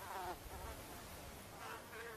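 Faint, thin whine of mosquitoes in flight, its pitch wavering. It swells near the start and again near the end.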